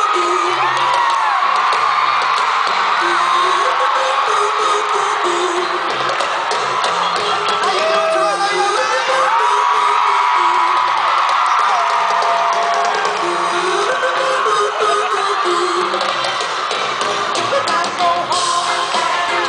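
Loud live pop-rock band music with a concert crowd screaming and whooping over it, recorded from among the audience.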